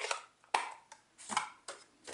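Plastic ink pad cases being handled and set down on a desk: a handful of short clicks and light knocks, roughly every half second.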